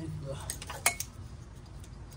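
A few sharp plastic clicks and light knocks from handling the mass airflow sensor and its wiring connector on an aftermarket cold air intake tube, the loudest click about a second in.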